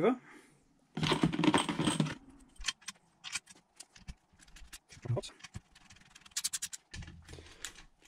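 A reassembled car alternator being turned over and shifted on a cardboard-covered bench, with a scraping rustle for about a second. This is followed by scattered metallic clicks and clinks as its case bolts are turned with a screwdriver, including a quick run of clicks about six seconds in.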